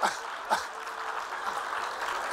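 Audience applauding and laughing, a steady spread of clapping through the whole moment.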